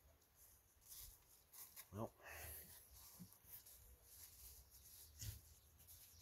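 Near silence: a faint low rumble, with a brief faint sound about two seconds in and another near the end.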